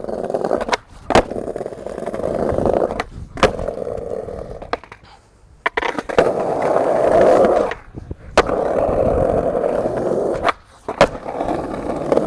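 Skateboard wheels rolling over rough concrete paving in several runs, with about six sharp clacks of the board's tail and wheels hitting the ground.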